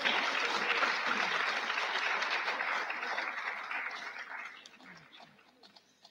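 Audience applauding, a dense spread of clapping that stays strong for about four seconds and then dies away.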